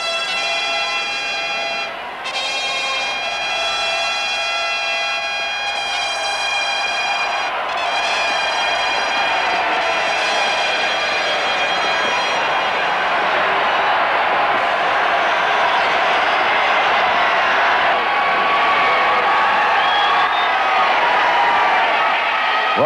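A brass fanfare of held notes with short breaks between phrases. About halfway through it gives way to a large crowd cheering, which swells toward the end.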